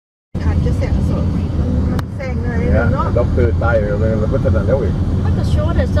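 Steady low road and engine rumble heard from inside a moving car's cabin, cutting in abruptly just after the start, with people talking over it. One sharp click comes about two seconds in.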